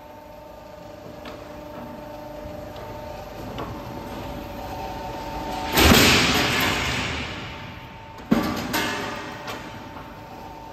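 CNC hydraulic flat-bar bending machine working steel strip into a clamp. Its servo drives and hydraulics give a steady whine of several tones that builds up. About six seconds in comes a loud hiss lasting a second, then a sharp clunk and a couple of lighter knocks.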